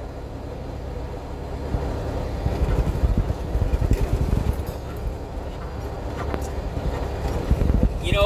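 Engine and road rumble inside the cab of a moving truck, with a few jolts from bumps in the road, heaviest a couple of seconds in and again near the end.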